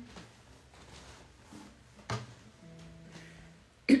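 Acoustic guitar played softly: a light knock about two seconds in, then a single low note ringing for about a second. A woman's voice starts singing at the very end.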